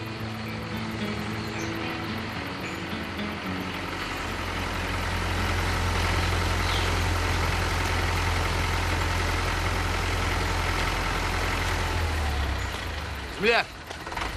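A motor vehicle engine running with a steady low rumble that swells from about four seconds in and dies away shortly before the end, followed by a brief loud call with rising and falling pitch.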